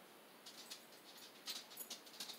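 Near silence, with a few faint, light taps in the second half as a small paintbrush dabs paint dots onto a plastic CD.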